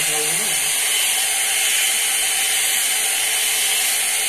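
Corded hot-air round brush (blow-dryer brush) running steadily, its motor and fan blowing air through the bristle barrel as it styles hair.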